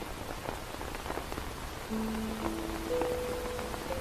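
Steady rain falling, with faint pattering ticks. About halfway through, soft music comes in: held low notes entering one after another and stacking into a chord.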